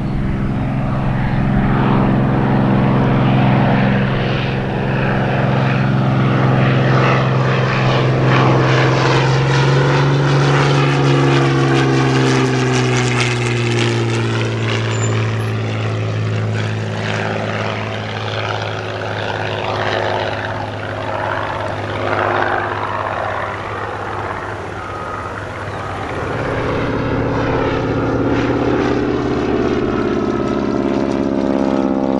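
Curtiss TP-40N Warhawk's Allison V-12 piston engine and propeller droning as the fighter flies low past, the pitch sliding slowly down as it goes by. Near the end a different piston engine takes over, a BT-13 Valiant's radial.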